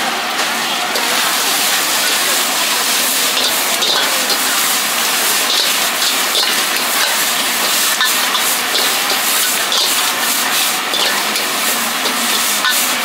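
Noodles sizzling in a hot wok while a metal ladle stirs and tosses them, with irregular sharp clicks and scrapes of the ladle against the wok that come more often in the second half.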